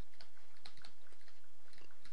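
Faint, irregular clicks and taps of a stylus on a graphics tablet as a word is handwritten, over a steady low hum.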